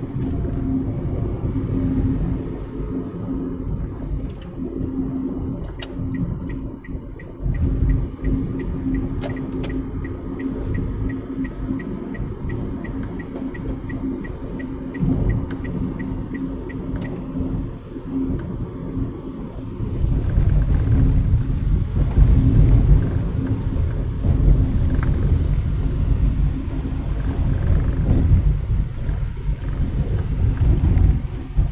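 Low road and engine rumble inside a moving car's cabin, with a steady hum. A run of evenly spaced ticks sounds from about six seconds in to about seventeen seconds in, and the rumble grows louder about twenty seconds in.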